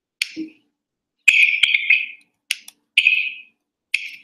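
A handful of sharp clicks, several followed by a short scratchy rustle, coming at irregular moments with silence between.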